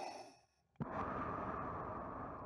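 Darth Vader's mechanical respirator breathing: the end of a hissing intake fades out, and after a short pause a long, breathy exhale begins about a second in.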